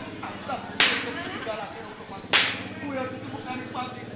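Two sharp, ringing percussion strikes about a second and a half apart, accents from the ketoprak's gamelan accompaniment marking the dramatic moment.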